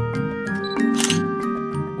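Background music of held, chiming notes, with a single DSLR camera shutter click about a second in.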